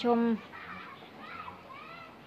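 A man's voice says one short word at the start, then faint distant voices, like children playing, are heard in the background.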